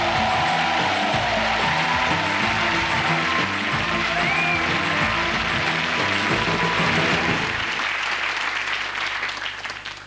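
Studio audience applauding over the show's closing theme music. The music's low notes drop out about three-quarters of the way through, and everything fades out near the end.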